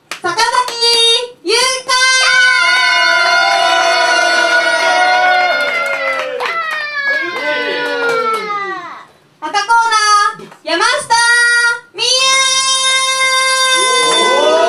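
A ring announcer calling out the wrestlers' introductions in a drawn-out, sing-song style: a long held call a couple of seconds in that falls away in pitch, a few short calls, then another long held call near the end.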